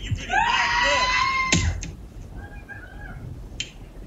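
A woman's long, high-pitched scream held for about a second and a half, followed by a sharp knock and fainter, shorter cries, then another brief knock near the end.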